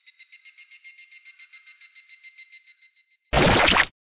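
Edited-in sound effect: a high, tinkling jingle pulsing about eight times a second. About three seconds in, it gives way to a loud, short noisy burst.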